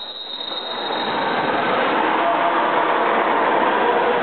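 Steady din of an indoor swimming pool hall during a race, with swimmers splashing and voices mixing into one echoing noise. It starts low and builds up over about the first second.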